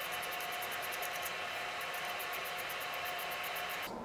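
Steady hiss of room air handling with a faint constant hum, cutting off abruptly at the end; the hand-threading of the lens itself makes no distinct sound.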